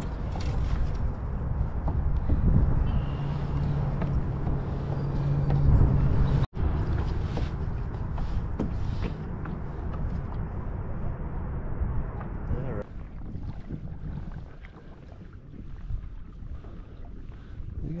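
Wind rumbling and buffeting a head-mounted action camera's microphone in gusts, with scattered knocks from handling in a kayak. The sound breaks off for an instant about six seconds in and is quieter from about two-thirds of the way through.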